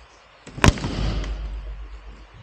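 Tractor cab roof lid being pried up off the cab: a sharp crack about two-thirds of a second in as it comes loose, followed by about a second of scraping and rattling as it lifts.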